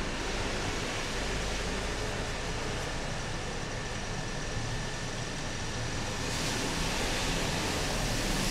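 Steady background hiss with a low hum and a faint steady high-pitched tone; the hiss gets brighter about six seconds in.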